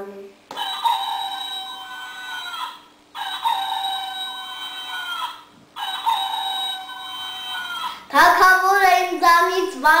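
Electronic toy rooster crowing three times in a row, each crow a long, steady-pitched call of about two and a half seconds. A child starts talking near the end.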